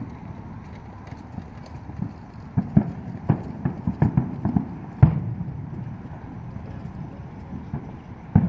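Neighborhood fireworks going off: scattered pops and bangs at uneven intervals, a quick run of them a few seconds in, and the loudest bang at about five seconds followed by a low rumble.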